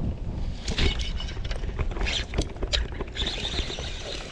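Wind rumbling low on the microphone, with a scatter of short sharp clicks and ticks starting about a second in.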